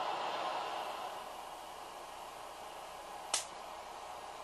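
A running Van de Graaff generator under a faint steady hiss, with a single sharp snap a little over three seconds in as a small spark jumps from the charged dome to the grounded discharge bulb.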